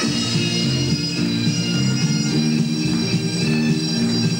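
Bagpipe music, a melody over sustained tones, playing without a break.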